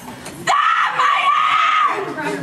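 A woman screaming at length at full voice: two long, high screams, the second held for about a second, with a brief catch between them.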